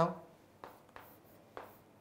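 Chalk writing on a chalkboard: a few faint, brief taps and scrapes as a box is drawn around a written answer.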